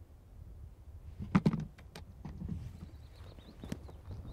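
Front door being handled: a quick cluster of sharp clicks and knocks from the handle and latch about a second and a half in, followed by a few lighter knocks.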